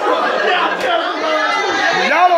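Several people talking over one another in lively, overlapping chatter.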